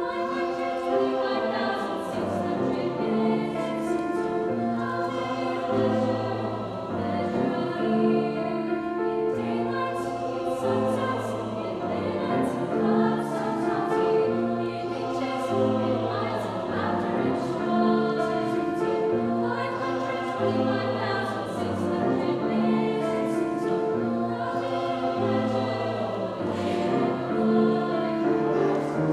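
A mixed high school choir singing with grand piano accompaniment, moving through chords held for a second or two each.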